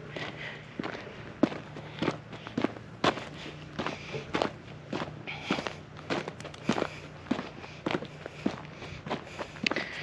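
A person's footsteps walking at an easy, even pace, about two steps a second.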